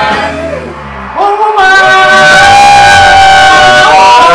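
Singing into a handheld microphone with electric guitar, the voices holding one long, loud note from about a second in.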